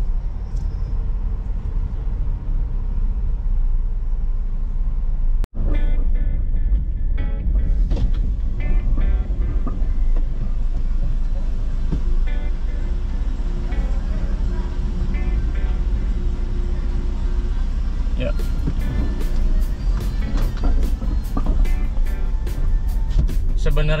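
Low, steady rumble of a 2023 Daihatsu Xenia driving, heard inside the cabin. It drops out for an instant about five seconds in, and after that background music plays over it.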